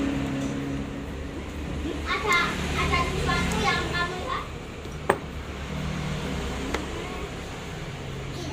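Small sharp clicks from metal watch parts being handled during disassembly: one a little after five seconds and a fainter one near seven. Under them is a steady low hum, with voices in the background about two to four seconds in.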